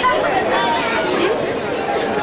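Several people talking at once, overlapping chatter with no one voice standing out.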